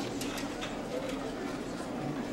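Murmur of background chatter, with a few light clinks and taps of pots and kitchen utensils being handled.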